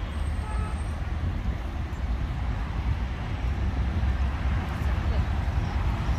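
Steady low rumble of road traffic on a nearby street.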